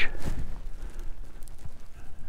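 Wind buffeting the microphone as a low, uneven rumble, with a few faint clicks, fading somewhat after the first half second.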